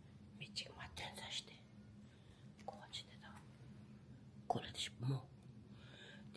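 A person whispering a few short phrases, with pauses between them.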